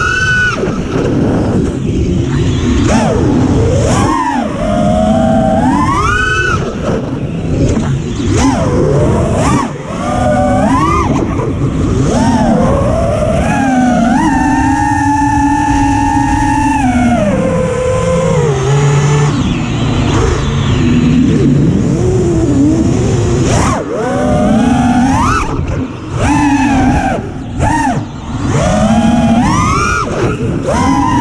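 FPV racing quadcopter's brushless motors and propellers, running on a 5S battery, whining in pitch sweeps that rise and fall with the throttle during freestyle flying, with a long steady high whine through the middle that then drops away. A low rushing of wind on the onboard camera runs underneath.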